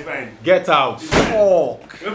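Men's excited, untranscribed shouts and exclamations, with one sharp slam or thump a little over a second in, followed by a falling cry.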